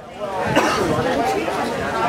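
People talking, several voices in unclear chatter.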